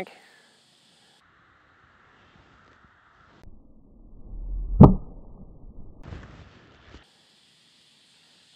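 An iron swung at a golf ball and catching it off the hosel, a shank: a rising swish with a low rumble, then one sharp click of the strike about five seconds in.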